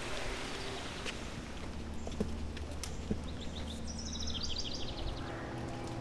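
Steady outdoor background noise, with a bird singing a quick trill of rapid high notes a little past halfway through.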